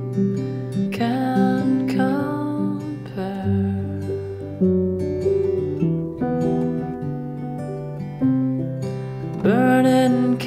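Acoustic guitar playing an instrumental passage of a song, chords and notes struck about every second or so and left to ring.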